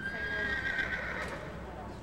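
A horse whinnying: one long high call that lasts about a second and a half and fades out.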